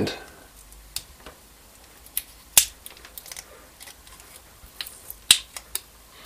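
Plastic shrink-wrap being picked at and torn open on an 18650 lithium cell with a pointed multimeter probe: a scatter of small sharp clicks and crackles, the two loudest about two and a half and five seconds in.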